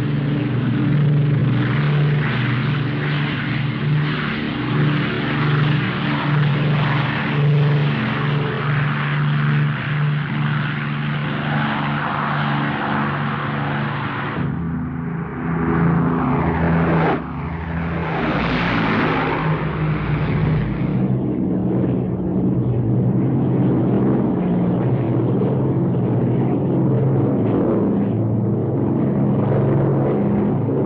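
Avro Lancaster bombers' Rolls-Royce Merlin engines drone steadily at take-off power. About halfway through, one aircraft passes low overhead with a falling pitch, then the steady drone of the formation carries on.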